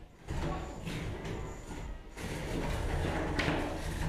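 Scraping and sliding noise from two 3 lb combat robots stuck together, one robot's spinning blade lodged in the other's top armour, shifting against each other on the arena floor.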